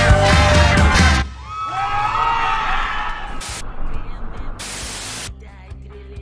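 A live rock band playing, cutting off about a second in; then an audience whooping and cheering, with two short bursts of hiss near the end.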